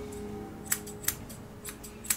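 Grooming scissors snipping the hair on a Yorkshire terrier's head: four or five sharp metal snips at uneven intervals.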